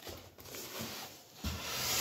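Cardboard LP record sleeve being handled and slid across the desk: a rubbing hiss that grows to its loudest near the end, with a soft knock about one and a half seconds in.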